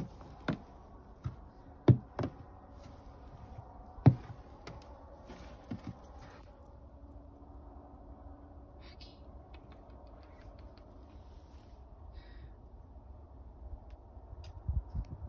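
A handful of sharp, short knocks and taps, the loudest about two and four seconds in, followed by only faint scattered ticks.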